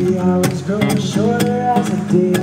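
Steel-string acoustic guitar strummed in chords, with repeated strokes across the strings.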